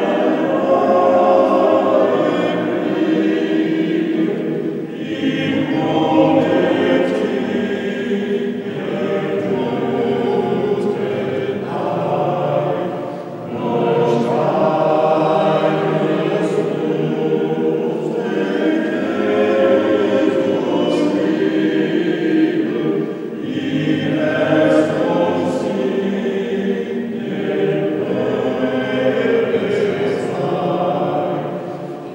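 Mixed choir of men's and women's voices singing in long phrases with short pauses for breath, in a large stone church.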